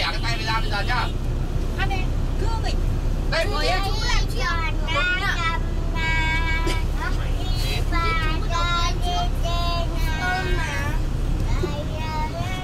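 A small child's high-pitched voice singing and babbling in short, wavering phrases over the steady low rumble of a moving vehicle heard from inside the cabin.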